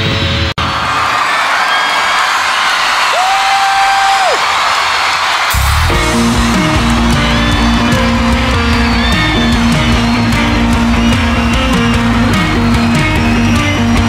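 Live band music with electric guitar. After a brief dropout near the start, a sparse passage follows: crowd noise and a single held note. About five and a half seconds in, the full band comes in with bass, guitars and cymbals.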